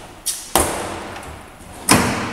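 A laptop handled on a lectern top, its lid shut and the machine set down: a few clicks, with a sharp knock about half a second in and another near the end, each dying away with a brief ring.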